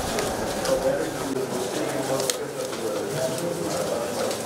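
Steady babble of many indistinct voices in a busy hall, with short crisp ticks of paper ballots being handled and sorted.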